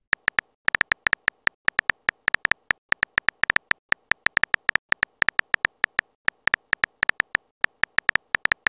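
Typing sound effect of a texting-app animation: a quick, uneven run of short identical keystroke clicks, about five or six a second, one per letter as a message is typed.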